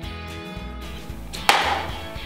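Country-style acoustic guitar music, with one sharp thwack about one and a half seconds in as an arrow from a homemade mini bow strikes and knocks off a target.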